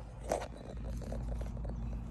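A brief rustle of handling about a third of a second in, then faint scattered ticks over a low, steady background rumble, as a hand moves among the cucumber leaves and the phone.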